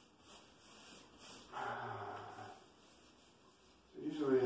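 A man's short, steady-pitched hum, lasting about a second, starting about a second and a half in, over a quiet room.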